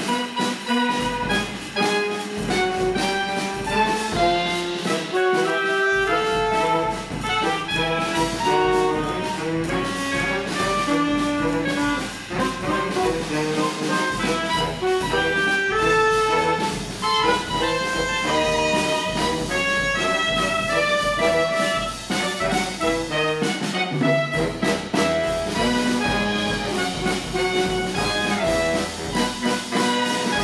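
Saxophone quartet playing a composed piece with a drum kit: several saxophones in overlapping held and moving notes, with drums underneath.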